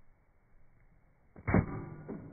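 Homemade metal keyblade swung down onto a pineapple: one sharp hit about a second and a half in, followed by a short ringing tone that fades.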